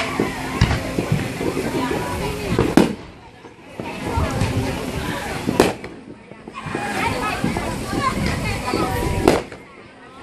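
Aerial fireworks bursting, with four sharp bangs spaced about three seconds apart, the loudest about three seconds in.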